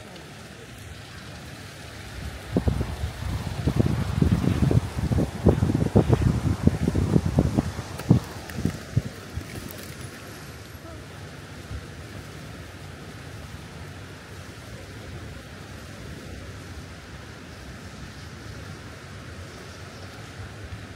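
Wind gusting across the microphone, with heavy low buffets from about two seconds in until about nine seconds, over a steady rush of a shallow river running over rocks.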